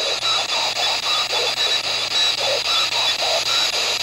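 P-SB11 dual-sweep ghost box radio scanning through stations: steady static hiss over a constant high whine, chopped every fraction of a second by brief snatches of sound as the sweep jumps from channel to channel.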